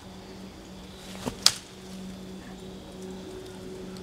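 A disc golf throw made from a crouch in dry leafy brush: one short sharp swish and snap about a second in as the disc is released, over a faint steady low hum.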